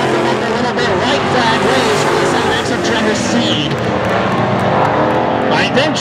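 A pack of dirt-track stock cars racing around the oval, their engines running hard together and rising and falling in pitch as they go through the turns.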